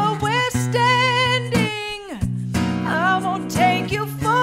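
A woman singing with vibrato over an acoustic guitar. About two seconds in, her voice slides down and breaks off briefly, then she sings on.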